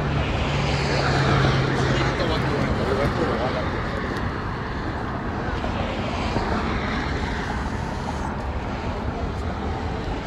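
Steady road traffic noise along a busy city street, with a low engine hum from a passing vehicle for the first few seconds.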